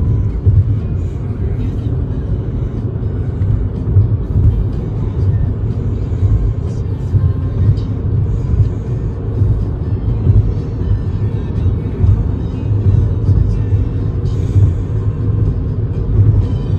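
Steady low road and engine rumble inside a car cabin at highway speed, with music playing faintly underneath.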